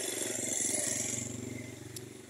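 Small motorcycle engine running under a steady hiss, its sound fading toward the end as it slows.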